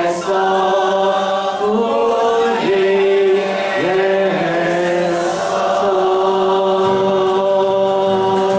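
A congregation singing a Chinese worship song together, led by a man's voice, with long held notes and short glides between them.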